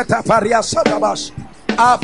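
A man's voice over a microphone praying rapidly in tongues: a quick, rhythmic run of short syllables that pauses briefly a little past halfway and then starts again.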